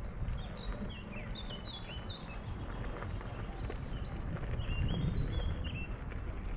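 A songbird singing a run of short, high whistled notes, many of them stepping down in pitch, over a steady low rumble.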